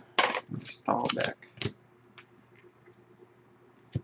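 A few words of a voice in the first second and a half. After that the room goes quiet, with a few faint ticks of trading cards and wrappers being handled and a sharper tap at the very end.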